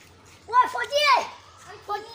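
A young child's high-pitched voice calling out, loudest from about half a second in to a second and a half, with a brief call again near the end.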